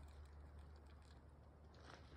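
Near silence: a faint low hum with a few soft clicks.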